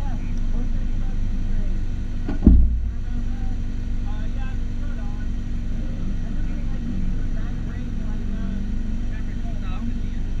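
Car engine idling steadily at close range, with a single heavy low thump about two and a half seconds in. Faint voices in the background.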